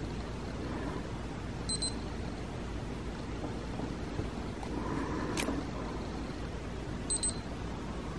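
Handheld blood glucose and ketone meter beeping twice, about five seconds apart: short, high-pitched electronic beeps as the meter gives its readings.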